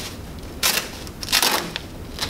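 Velcro (hook-and-loop) fastening on a bassinet's fabric liner being peeled apart in two short rips.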